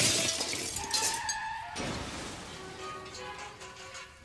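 A glass window pane shattering, with shards tinkling for about a second and a half, then quiet music with held notes.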